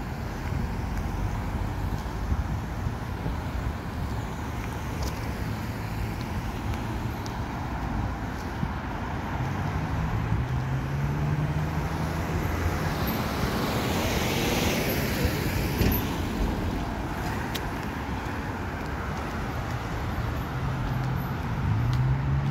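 Road traffic on a wet city street, with cars passing. From about halfway through, one vehicle's engine hum grows, and its tyre hiss swells to a peak about two-thirds of the way in, then fades.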